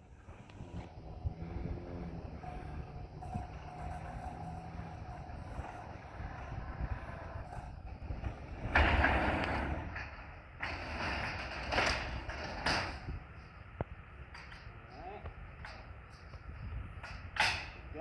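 Garage door opener running as the sectional garage door rolls up, with a steady motor tone. About nine seconds in comes a loud rough rattle, and later a few sharp knocks, as the retractable garage screen door is lowered and latched.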